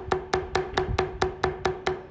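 A metal leather-stamping tool struck repeatedly with a mallet, driving the stem and branch lines into vegetable-tanned leather: an even run of sharp taps, about four to five a second.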